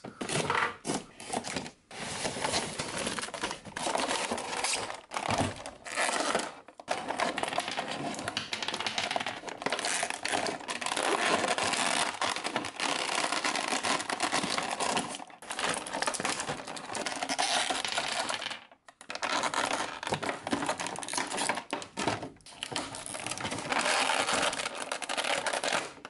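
Cardboard toy box opened with a small blade, then a thin clear plastic blister tray crinkling and crackling as action figures are worked free of it by hand. The crackling is nearly continuous, with a few brief pauses.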